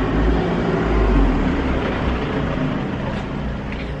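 A van's engine running: a steady low rumble with a hiss over it, easing off slightly toward the end.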